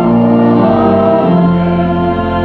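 Church organ playing sustained chords in a hymn, the chords shifting as it moves on.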